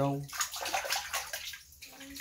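Water splashing and sloshing as a bare foot kicks and stirs the water of a stone-lined spring well, dying away about one and a half seconds in.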